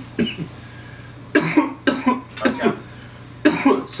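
A man coughing in a run of separate harsh coughs, with a last bout near the end: coughing brought on by a hit of cannabis smoke from a water pipe.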